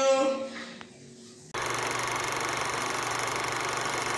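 A steady machine-like running sound with a fast, even rattle, starting abruptly about a second and a half in after a voice trails off.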